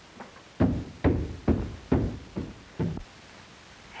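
A run of six dull, heavy thumps, about two a second, getting weaker toward the end.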